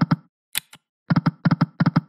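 Video slot game sound effects: a couple of single clicks, then the five reels stopping one after another as a quick run of five double clicks, each with a low knock.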